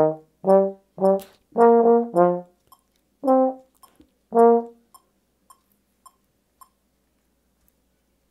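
Tenor trombone playing the last phrase of a march exercise in short, detached staccato notes, ending about five seconds in. After the last note, faint clicks of a click track tick on about twice a second and stop near the end.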